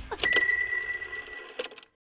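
Short electronic end-of-video sting: a single bell-like tone comes in about a quarter second in and holds for about a second and a half over rapid faint ticking, with a brighter click near the end.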